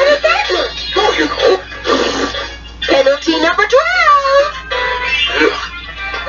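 VHS tape soundtrack playing through a small TV/VCR combo's speaker: a voice singing or wailing in wavering, gliding pitch over music, with a steady low hum underneath.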